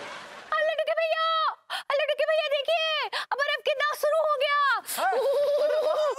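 A high-pitched voice vocalising in short, arching syllables with brief breaks, without words the recogniser could catch, as if half-singing.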